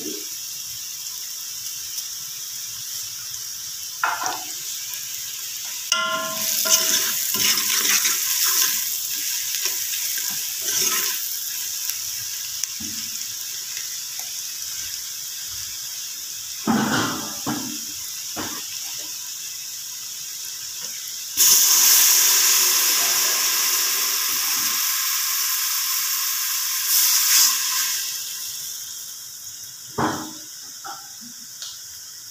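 Sliced onions and spices sizzling in hot oil in an aluminium pot, with a few spoon scrapes. About two-thirds of the way in, water poured into the hot pot sets off a sudden much louder sizzle that holds for several seconds, then dies down.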